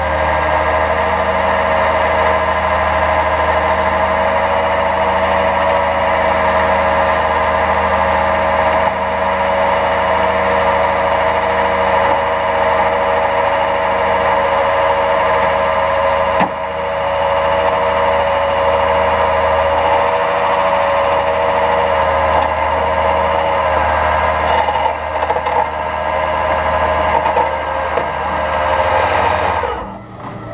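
Rollback tow truck's hydraulic winch running steadily, a whine over the truck's engine drone, as it drags a Ford pickup up the tilted bed. There is a brief dip about halfway through, and it cuts off at the end as the pull stops.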